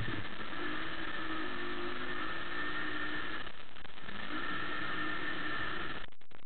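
A motor running with a steady-pitched whine in two spells, pausing briefly about halfway through, over a steady rushing background.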